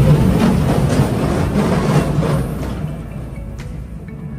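Small caterpillar roller coaster running on its track at slow speed: a loud noisy rumble that fades steadily, with background music under it.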